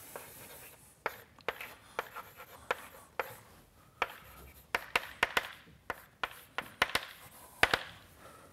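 Chalk writing on a blackboard: a run of sharp, irregular taps and short scrapes as each stroke hits the board, some coming in quick pairs.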